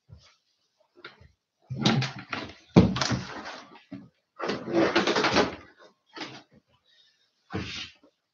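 Handling noise: a string of rustling and knocking sounds in short bursts, the sharpest about three seconds in, as a handheld microphone and its cable are gathered up off a wooden table and the camera is moved.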